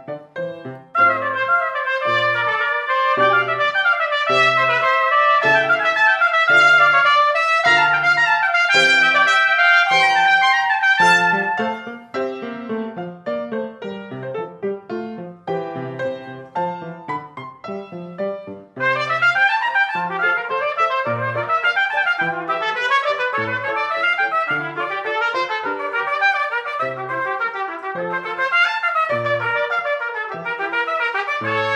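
Two trumpets, one of them an E-flat trumpet, playing a duet over piano, the piano keeping a steady bass line. The trumpets come in about a second in; from about twelve seconds one trumpet carries on more quietly with the piano, and both trumpets return loud at about nineteen seconds.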